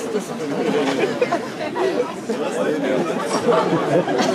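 Many overlapping voices of a crowd chattering, with no one speaker standing out.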